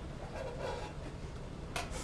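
A metal slotted spoon scraping faintly in a stainless steel pot as poached eggs are lifted out, with one sharp click near the end, over a steady low kitchen hum.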